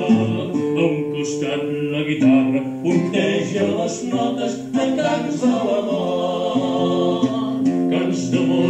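A man singing in long held notes to a strummed and plucked acoustic guitar.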